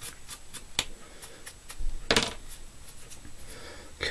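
A chunk of natural deer hair being combed to pull out its underfur: light, quick scratchy strokes, about four a second, then one louder stroke about two seconds in.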